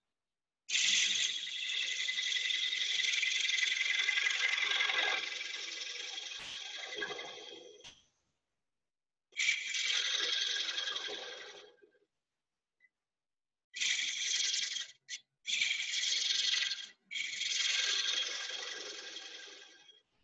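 Turning tool cutting into a spinning cherry bowl on a wood lathe, in five cuts: a long one of about seven seconds, then four shorter ones of one to three seconds with brief pauses between.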